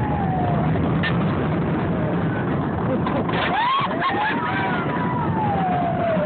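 Roller coaster train running on its track: a steady rumble and rush of noise, with long high squeals gliding up and down over it.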